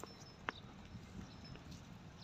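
Camels browsing on a tree's low branches: faint rustling and munching of leaves and twigs, with a single sharp click about half a second in.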